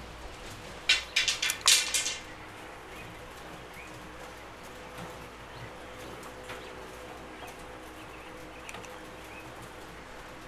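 A short burst of clicking and rattling from a caulking gun being worked about a second in. After that come faint, scattered calls of caged coturnix quail over a steady low hum.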